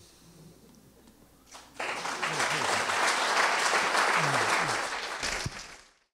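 Audience applauding: the clapping starts about a second and a half in, holds steady, then fades out near the end, with a few voices faintly heard under it.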